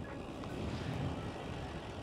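Quiet, steady outdoor rumble and hiss with no distinct events. The e-bike's hydraulic disc brakes are being tested here and make no squeal.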